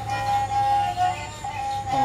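Bodo serja, a bowed wooden folk fiddle, holding a long high note that dips briefly to a lower note about a second in and returns, over a low steady hum.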